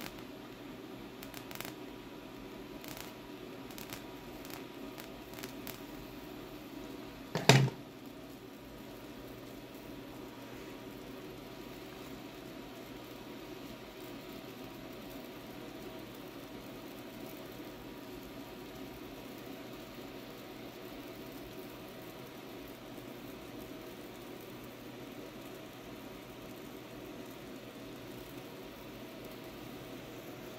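High-frequency solid-state Tesla coil's plasma flame burning steadily with a faint sizzle, driven hard at about 280 watts, a power at which the flame is no longer quiet. A few short crackles sound in the first couple of seconds, and one brief loud pop about seven and a half seconds in.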